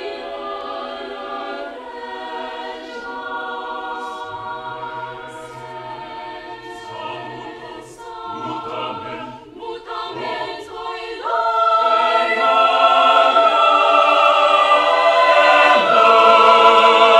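An a cappella choir singing sustained chords. It is softer through the middle, with low voices coming in about four seconds in, then it swells suddenly to a loud full-choir passage about eleven seconds in.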